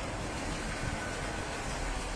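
Steady outdoor background noise, an even hiss over a low rumble, with no distinct event standing out.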